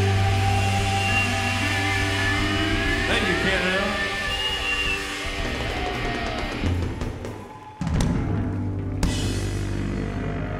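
Live rock band playing loud, with sustained distorted electric guitar over drums and bending guitar notes about three seconds in. The sound drops away briefly near eight seconds and comes straight back in.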